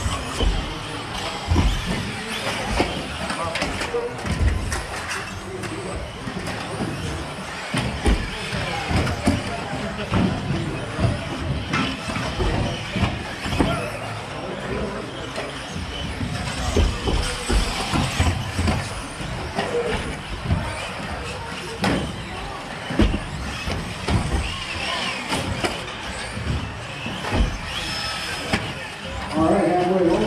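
Electric 1/10-scale RC buggies racing on an indoor off-road track, their motors whining up and down, with frequent short low thumps, over a steady din of voices in the hall.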